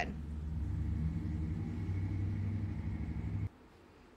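A steady low rumble with a faint high whine over it, cutting off suddenly about three and a half seconds in, leaving near silence.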